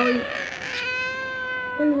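A toddler's high-pitched vocalising: a short squeal at the start, then from about a second in one long, held whine that sags slightly in pitch.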